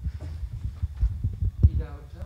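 Handling noise on a handheld microphone: irregular low thumps and rumble as it is moved and carried, the loudest thump about one and a half seconds in.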